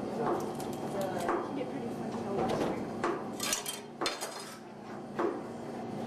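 Dishes and cutlery clinking and knocking during kitchen food preparation, with a cluster of sharp knocks about three to four seconds in.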